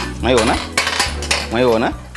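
Glass marbles clicking and clattering as they are dropped into the pits of a mancala-style game board, with a wavering ring twice as marbles roll around in the hollows.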